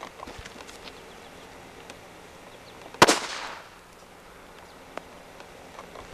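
One sharp firecracker bang about halfway through, dying away over about half a second, with a few faint small ticks around it.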